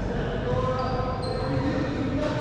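Players' shoes squeaking briefly on a hardwood racquetball court floor between rallies, over a steady low rumble of the enclosed court, with faint voices.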